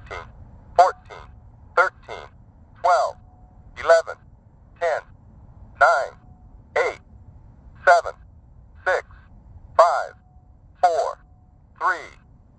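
Polara N4 accessible pedestrian push button's synthesized voice counting down the crossing seconds, one number about every second, over a low traffic rumble. This is the countdown of time left to cross after the walk signal.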